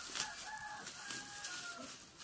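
A rooster crowing: one long call that drops in pitch at the end. A short click near the start.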